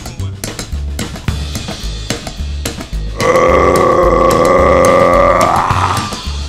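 Live band playing a steady drum beat with bass and cymbal clicks. About three seconds in, a singer holds one long loud note that slides down just before it ends.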